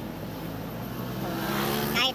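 Cargo truck's engine running steadily while driving, heard from the cab, with a motorcycle passing close alongside that grows louder near the end.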